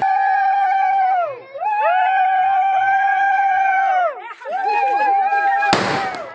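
Women's wedding ululation (uruli): three long, high, held calls, each sliding down in pitch as it ends, the last with several voices at different pitches. A short sharp burst of noise comes just before the end.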